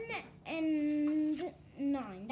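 A child's voice holding one long, level note in a sing-song way for about a second, then a shorter note near the end.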